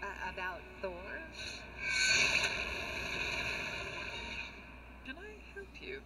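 Soundtrack of an animated episode played back at moderate level: faint lines of dialogue at the start and near the end, and a rushing noise that swells about two seconds in and fades away over the next two seconds.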